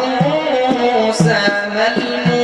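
Egyptian religious inshad: a male voice sings a wavering, ornamented line over steady held notes, while a hand-played frame drum beats about twice a second.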